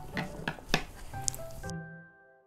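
A few light taps and handling noises on a table, with background music coming in about a second in; the room sound cuts off near the end, leaving only the music.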